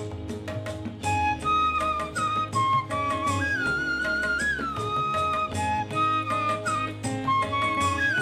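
Instrumental Indian classical music: a flute plays a slow melody of held notes with sliding ornaments, over a steady drone and light percussion strokes. The melody comes in about a second in.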